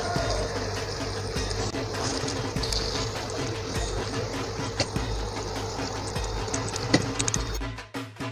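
Marinated chicken pieces going into hot masala in a pan, sizzling and bubbling, with a few clicks and a steady low hum underneath. Just before the end, upbeat percussive music takes over.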